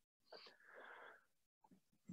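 Near silence, broken by one faint breath into the headset microphone lasting under a second, starting about a third of a second in.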